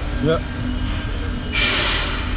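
KASTOtec A4 automatic band saw running with a steady low hum, and a short hiss about one and a half seconds in.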